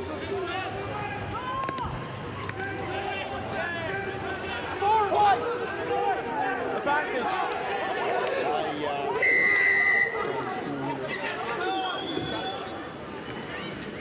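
Rugby referee's whistle: one clear blast of just under a second about nine seconds in, blowing for a penalty at the ruck. Players' shouts and crowd chatter run underneath.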